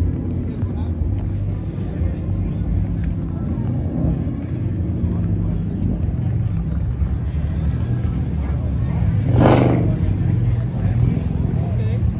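A car engine idling with a steady low sound, and a brief loud burst of noise about nine and a half seconds in.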